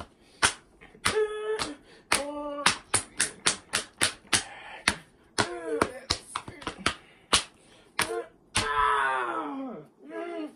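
Quick, irregular sharp slaps and clicks, about three or four a second, with short wordless vocal sounds between them and one long falling vocal sound near the end.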